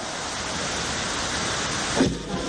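A steady hiss of falling water, slowly growing a little louder.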